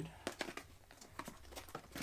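Small cardboard lens box being opened by hand: a few light clicks and a faint rustle of the flap and packaging.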